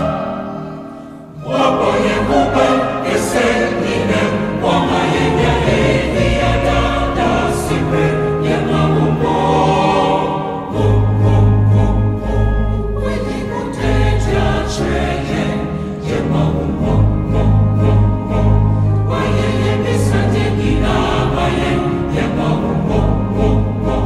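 Mixed choir singing a gospel song in Twi, accompanied by keyboards. The sound drops briefly about a second in between phrases, and a heavy bass line comes in around the middle.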